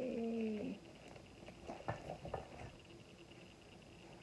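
A woman's voice holding a short hummed "mmm" that falls slightly in pitch, followed a second or so later by a few light knocks of plastic baby-swing parts being handled.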